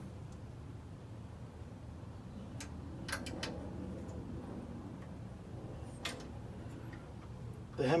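A few faint, sharp metallic clicks of a small wrench on the Predator 212 Hemi's rocker adjuster as its 9mm lock nut is snugged down to hold the exhaust valve lash just set with a feeler gauge, over a low steady hum.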